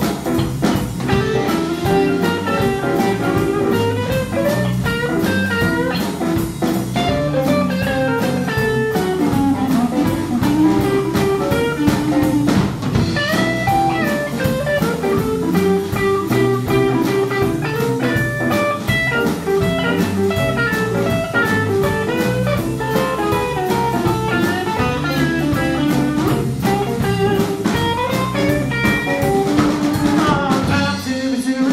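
Live blues band playing an instrumental break: a guitar lead over a drum kit keeping a steady beat.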